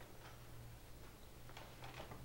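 Quiet meeting-room tone: a steady low hum with a few faint ticks.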